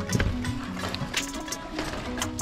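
Background music with held notes that step in pitch, over sharp percussive hits.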